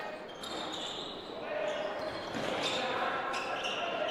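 Gym sound during a basketball game: a ball bouncing on the court, with voices echoing in the large hall.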